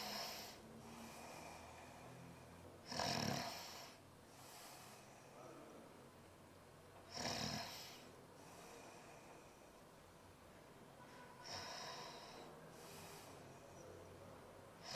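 A man snoring in his sleep, with a snore roughly every four seconds.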